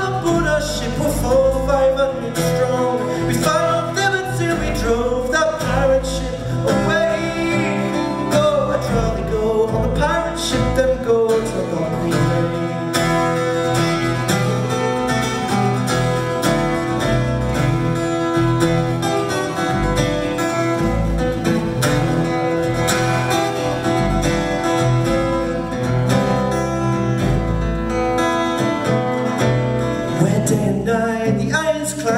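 Live steel-string acoustic guitar with a man's voice singing over it in the first dozen seconds or so, then the guitar playing on alone as an instrumental passage.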